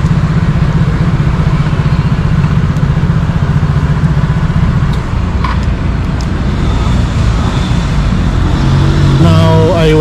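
A motor scooter engine idling close by, a steady low running sound. A few light clicks come about five to six seconds in as a handlebar phone holder is clamped on.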